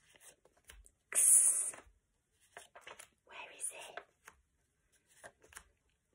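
Paper flashcards being slid and flipped in the hand, with one louder papery rasp about a second in and fainter rustles after.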